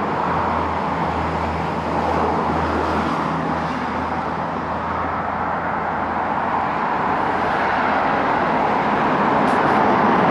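Road traffic: cars driving past on a nearby road, a steady rushing noise with a low engine drone in the first three seconds, getting a little louder toward the end.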